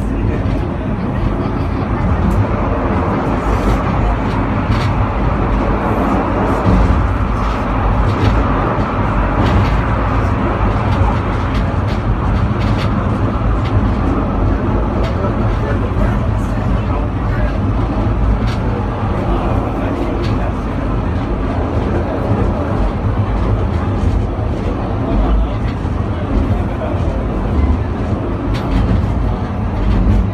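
Penang Hill Railway funicular car running along its track, a steady low rumble heard inside the car, with passengers' voices in the background.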